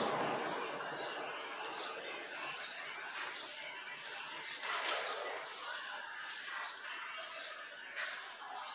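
A small bird chirping over and over, short high chirps about every half second.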